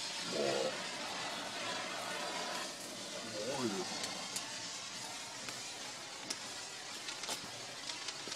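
Red Bengal cylinder flame burning with a steady hiss, with a few faint crackles in the second half.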